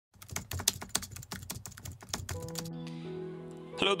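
A rapid, uneven run of clicks, about ten a second, for roughly two and a half seconds. It gives way to a held musical chord of several steady notes. A man says "hello" right at the end.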